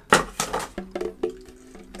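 A few light handling knocks on the body of a new Enya solid-mahogany tenor ukulele, then its open strings ringing faintly and steadily, not yet tuned.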